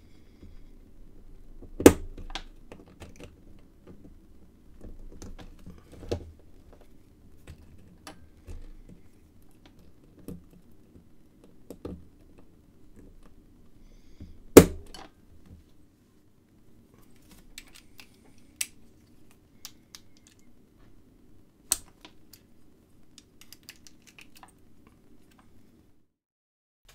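Small metallic clicks and taps of a thin stainless-steel circlip tool working a steel circlip off a brass euro cylinder lock, scattered and irregular. Two sharp, louder clicks come about two seconds in and about halfway through.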